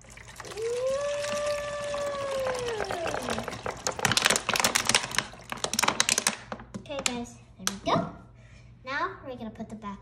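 Water poured from two plastic water bottles into a plastic bowl, a steady splashing pour that turns into rapid irregular glugging as the upturned bottles empty, then stops about six seconds in.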